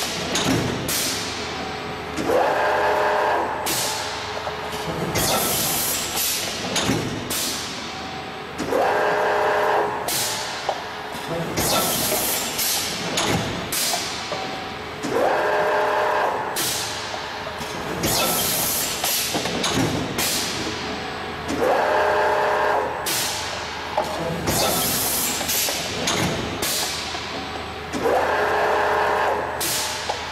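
Injection moulding machine cycling a two-cavity thin-wall cup mould, repeating about every six and a half seconds. Each cycle has a pitched machine whine lasting about a second and several short, sharp hisses of air blasts from the mould's air lines.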